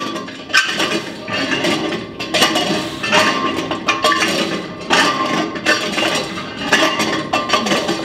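Reverse hyperextension machine being worked for reps: its weighted swinging arm and loaded plates give off repeated sharp metallic clanks and clinks, roughly one to two a second.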